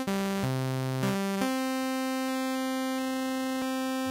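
Synthesizer notes played through a sample-and-hold sample-rate reducer clocked at a fixed rate, not tracking the note pitch, giving crispy aliasing tones. A few short notes give way to one long held note about a second and a half in, while high aliasing tones shift in steps as the clock rate is lowered.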